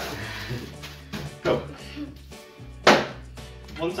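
Background music with a few sharp knocks, the loudest about three seconds in, as a wooden rolling pin works a bag of crushed digestive biscuits and a metal tart tin is handled on a steel worktop.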